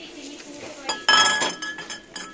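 A glass footed salad bowl clinks against glass on a store shelf about a second in. It gives a bright ringing that dies away over about a second.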